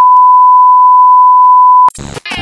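TV test-pattern reference tone: a single steady, very loud beep at about 1 kHz. It cuts off just before the end with a brief glitchy crackle.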